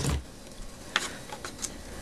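Quiet handling of the card stock over a cutting mat: light paper rustle with a couple of short clicks, about a second in and again a little later.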